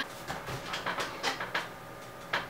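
Soft, breathy laughter trailing off: a string of short puffs, about four a second, that fade.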